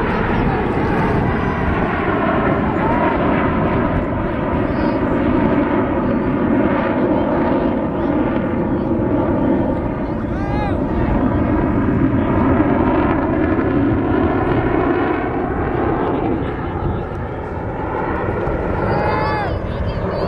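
Four Blue Angels F/A-18 Hornet jets passing overhead in formation: a continuous jet-engine rush with slowly shifting, phasing bands of pitch as the planes move across the sky, loudest in the middle and easing near the end.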